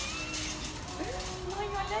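A woman's voice making a drawn-out wordless sound that rises and then holds a steady pitch through the second half, over faint shop background noise.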